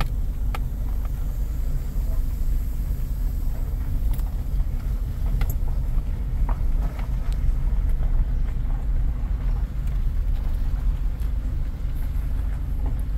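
Steady low rumble of a pickup truck's engine and tyres heard from inside the cab as it rolls slowly, with a few faint ticks.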